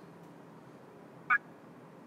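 Faint steady background hiss with one very short, high-pitched chirp just past halfway through.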